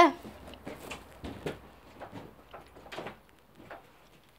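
Faint, irregular clicks and light knocks of small plastic containers and utensils being handled on a tabletop, thinning out towards the end.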